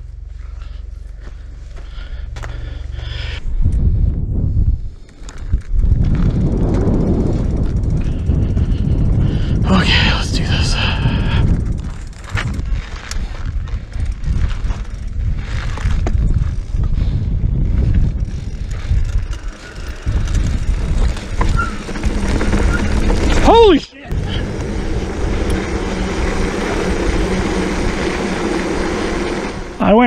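Wind rushing over an action-camera microphone and knobby tyres on a dirt trail during a fast mountain-bike descent, loud and rough with rattles from the bike. About two-thirds through, a short squeal falls sharply in pitch, then the rear hub's freehub buzzes steadily as the bike coasts.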